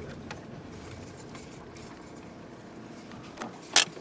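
A car heard from inside its cabin, running quietly with a steady low rumble. A sharp click comes near the end.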